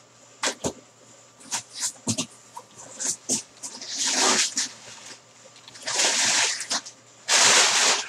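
A cardboard box being opened by hand: sharp snaps and clicks as the flaps are worked loose. Then crumpled brown packing paper rustles in three bursts as it is pulled out, the last one the loudest, near the end.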